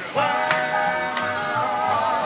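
Several men singing in close harmony, holding a sustained chord, backed by an upright double bass. Two sharp hand claps cut through, about half a second and just over a second in.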